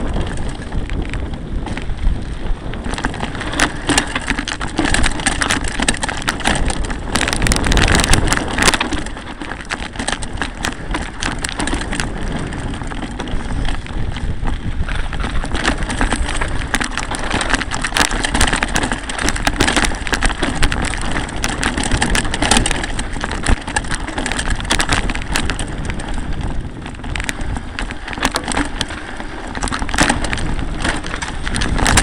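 Mountain bike riding over a rough dirt and rock trail: a constant rumble with many sharp knocks and rattles from the jolting, and wind on the microphone. It grows louder for a couple of seconds about eight seconds in.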